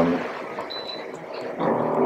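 A short, high electronic beep from a Toshiba water dispenser's touch panel as a setting is pressed, over a steady background hiss.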